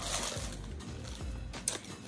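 Soft background music, with a sharp crinkle of a clear plastic bag being handled about one and a half seconds in.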